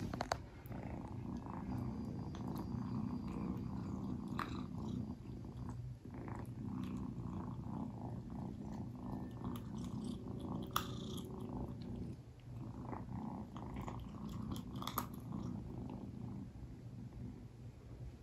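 A kitten purring steadily while it eats dry kibble, with scattered small crunches and clicks of kibble against the ceramic bowl. The purr briefly dips twice.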